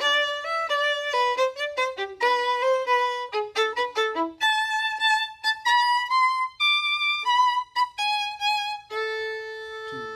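A single violin playing a passage of bowed notes: quick, separate notes for the first four seconds or so, then longer notes, settling on one long held note near the end.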